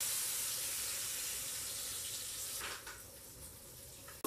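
Sausages sizzling in a hot frying pan on an electric stovetop: a loud, steady hiss that starts abruptly as they go into the pan and dies down after about two and a half seconds, with a brief knock at the pan near that point.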